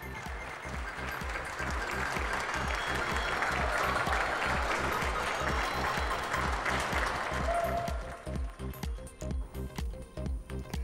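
A group of people applauding. The clapping swells over the first few seconds and dies away near the end, over background music with a steady low beat.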